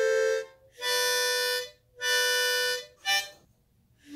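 Seydel diatonic blues harmonica in G, played by a beginner in the first hour: three held chords of about a second each, with short gaps between, then a brief puff about three seconds in.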